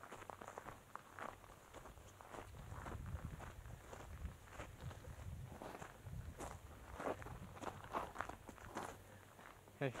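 A hiker's footsteps crunching on a dirt and loose-gravel trail at a steady walking pace.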